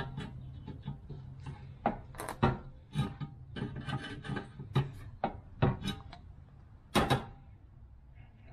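Irregular clicks, taps and scrapes of Irwin groove-joint pliers gripping and bending the thin aluminum edge of a new all-aluminum radiator, straightening metal that was bent out of shape when it was drilled.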